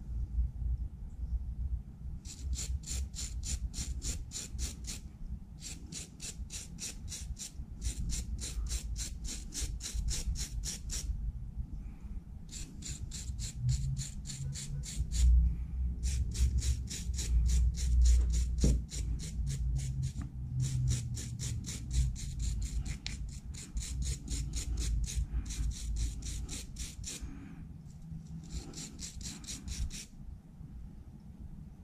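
A stiff hand brush scrubbing a freshly cast aluminium skull pendant, with quick back-and-forth strokes of about four or five a second. The strokes come in several bouts with short pauses between them, as the residue is scrubbed off the casting.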